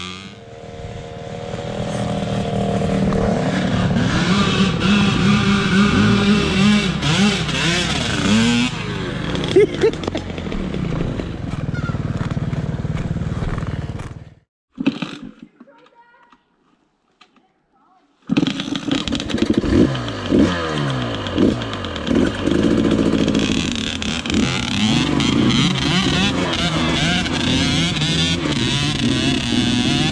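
Dirt bike engines revving up and down as they ride, the nearest being a KTM off-road motorcycle, with a second bike running just ahead. About halfway through the sound cuts out almost to silence for nearly four seconds, then comes back.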